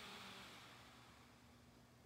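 Near silence: room tone, with a faint breathy hiss that fades away over the first second.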